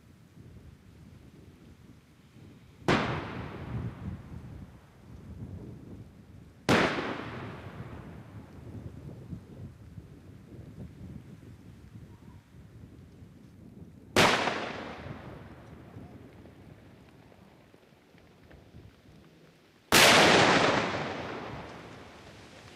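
Four demolition explosive charges going off one after another, several seconds apart, each a sudden blast followed by a rumble dying away over a couple of seconds. The last, near the end, is the loudest and longest.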